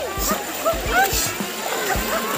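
Pool water splashing as a person jumps up and down in it, with high-pitched voices over the splashing.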